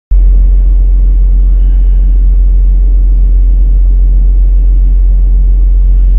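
Loud, steady, deep rumble of a bulk carrier under way, with the ship's engine hum and wind on deck. It is unchanging throughout, with no voices.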